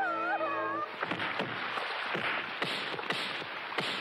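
A held musical chord under a high, wavering cry, cut off after about a second by heavy pouring rain with repeated splashes and thuds.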